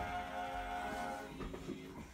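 A small group of men singing a cappella, holding a sustained chord for about a second before breaking into shorter notes.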